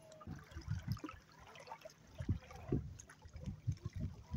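Small lake waves lapping and sloshing at the shallow edge close to the microphone, in an uneven run of low splashes several times a second.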